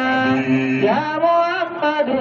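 Men chanting a devotional song into handheld microphones: a long held note, then a new phrase rising in pitch about a second in.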